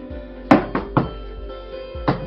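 A stack of journal pages and cover boards knocked against a tabletop to square them up: one sharp knock about half a second in, then two lighter ones, over steady background music.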